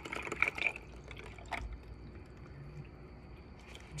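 Water being poured into a glass of ice, trickling for about a second and a half and ending with a click. After that there is only faint room noise.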